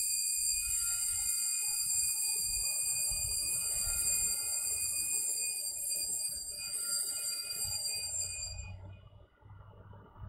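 Altar bells rung at the elevation of the consecrated host, marking the consecration: a steady high ringing that holds for about nine seconds and then stops.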